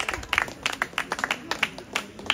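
A small crowd clapping: irregular, separate hand claps several times a second, with voices in the background.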